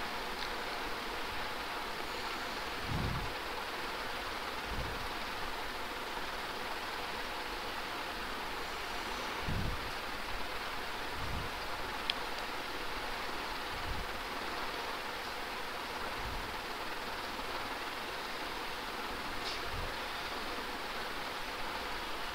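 Steady hiss of background room noise picked up by an open microphone, with a faint steady hum and a few soft low bumps scattered through.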